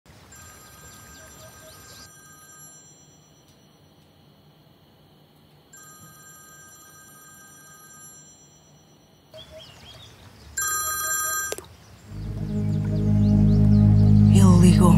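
A telephone ringing three times, each ring a steady electronic tone lasting about two and a half seconds; the third ring is shorter and louder. Music swells in loudly near the end.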